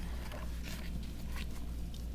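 Pages of a hardcover picture book being turned by hand, a few soft paper rustles over a steady low hum.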